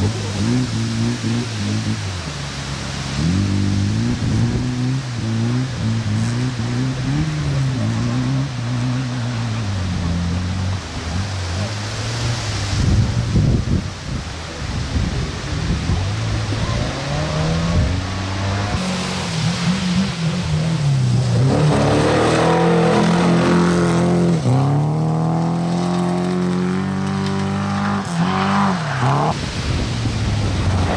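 Classic rally car's engine revving up and down again and again as it drives across a grass field off the stage road, louder and climbing higher in pitch in the second half.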